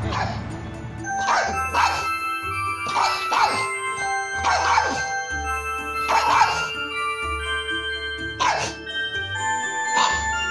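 A dog barking about seven times at uneven gaps over background music.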